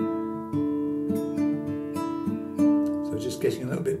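Nylon-string classical guitar fingerpicked slowly, one note at a time in a thumb-led alternating-bass pattern over a D add2 chord (open D, open E, second fret of the G, third fret of the B), each note ringing on. A man's voice comes in near the end.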